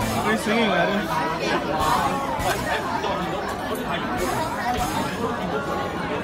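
Indistinct chatter of several voices talking in a busy, reverberant room.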